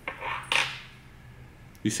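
A brief clinking clatter of small hard objects being handled, about half a second long near the start, loudest around half a second in.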